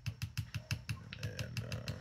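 A plastic spoon stirring coffee quickly in a double-walled glass mug, clicking against the glass about seven times a second.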